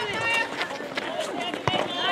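Players calling out over running footsteps during an outdoor netball game, with a sharp knock about one and a half seconds in.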